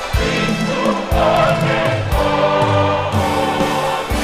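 A choir singing a Christian gospel song with instrumental accompaniment and low drum beats.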